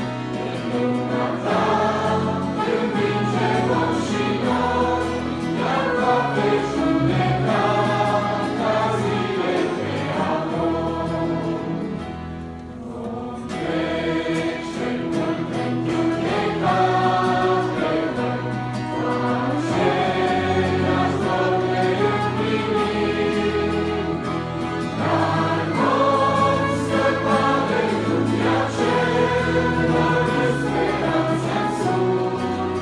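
A mixed choir of young people and children singing a Romanian hymn in unison, over a band accompaniment with sustained low notes. The music eases briefly about halfway through, then swells again.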